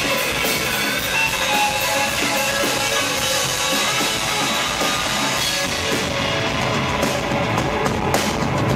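Live punk rock band playing an instrumental passage on distorted electric guitars, bass guitar and a drum kit, loud and driving.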